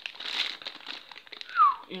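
Clear plastic bags holding the parts of a boxed figurine crinkling as they are handled, with one short falling squeak near the end.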